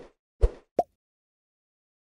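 Animation sound effects of a subscribe button being clicked: two short pops about half a second apart, then a quick pitched blip.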